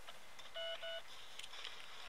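Two short, faint electronic beeps in quick succession, about half a second in, each a clear steady tone.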